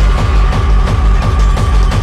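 Hardtek (free tekno) DJ mix: a fast, steady kick drum with a held high synth note over it.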